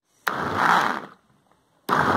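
Countertop blender switched on in two short pulses, each running about a second and stopping abruptly, blending grated bar soap with water. It is run in bursts rather than continuously so the mixture doesn't foam up.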